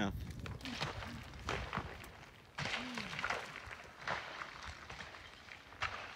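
A rolled rock bouncing and crashing down a forested hillside: a string of uneven knocks roughly a second apart.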